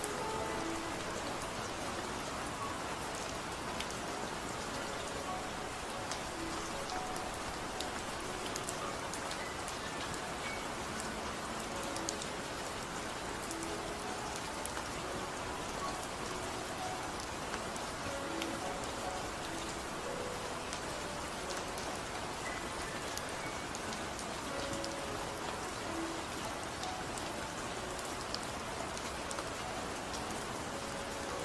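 Steady rain sound with faint drop ticks, under soft, slow music of sparse short held notes.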